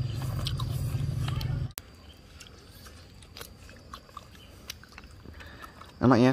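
People eating: chewing and scattered small clicks of chopsticks and bowls. A steady low hum runs for the first couple of seconds and cuts off suddenly.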